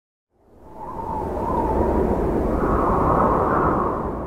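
Intro whoosh sound effect under a channel logo: a rushing swell of noise that fades in about half a second in, holds loud with a slight upward drift in pitch, and begins to fade near the end.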